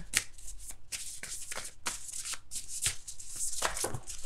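A deck of cards being shuffled by hand: a quick, uneven run of card slaps and riffles, about four or five a second.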